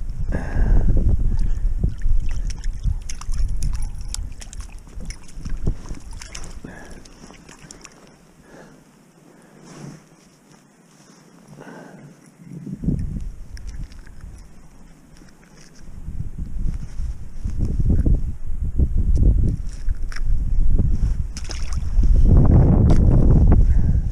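Wind buffeting an action camera's microphone in gusts, heavy at the start and again in the second half, with a lull in the middle; light clicks and rustles from mittened hands handling a freshly caught perch.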